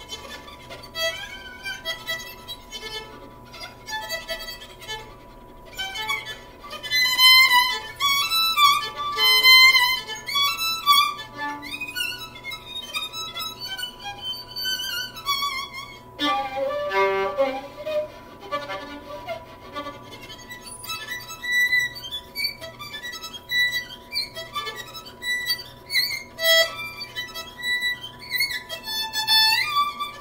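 Solo violin being bowed, playing a continuous melodic passage of held and moving notes. It drops to lower notes about halfway through.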